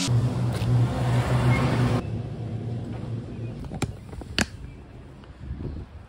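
Logo-reveal sound effect: a deep, steady rumble that drops off abruptly about two seconds in and then fades away, with two sharp clicks later on.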